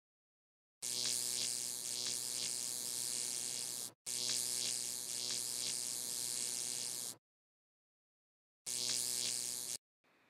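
Electric buzz of a neon sign used as a sound effect: a steady hum with a hiss over it. It comes in three stretches of about three seconds, three seconds and one second, each starting and cutting off abruptly, with dead silence in between.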